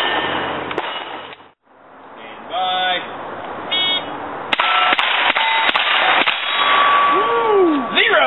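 Two short buzzing beeps from a shot timer, then a rapid string of about six rifle shots at steel targets, roughly a third of a second apart, starting about four and a half seconds in. Before a sudden break about a second and a half in, there is a loud noisy stretch with a couple of shots.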